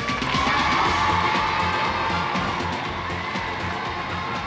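TV game show closing theme music with a studio audience cheering and whooping.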